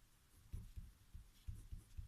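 Pen writing on a paper worksheet: faint scratching of the strokes with a few soft, low knocks as the pen and hand press on the desk.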